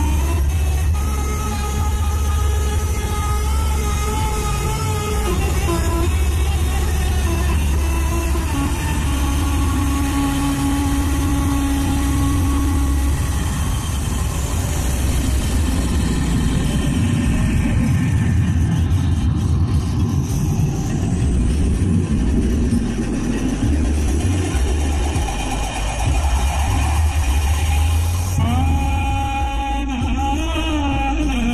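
Miniature sound-system speaker boxes playing loud, bass-heavy music in a sound battle, with a heavy continuous deep bass under shifting tones. A high rising sweep comes about twenty seconds in, and a new passage starts near the end.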